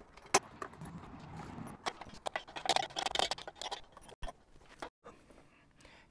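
Scattered metallic clinks, light scrapes and a few sharp clicks of wrenches and bolts against a steel patio heater base as the wheel axle is bolted on.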